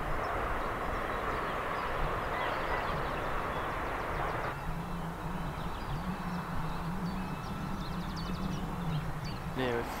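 Open-air hillside ambience with wind rumble on the microphone and a distant engine drone whose pitch wavers and edges upward through the second half.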